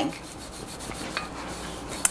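Rolling pin rolling over pie dough on a floured countertop: a soft, steady rubbing.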